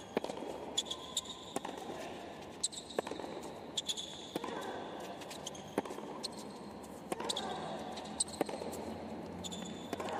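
Tennis rally on a hard court: sharp pops of the ball on the racket strings and court, roughly once a second, with short high squeaks of tennis shoes on the court over a steady murmur from the crowd.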